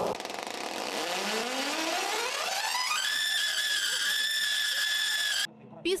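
Singing Tesla coil's electric discharge buzzing a note that slides steadily upward for about two seconds, then holds a high pitch and cuts off suddenly near the end.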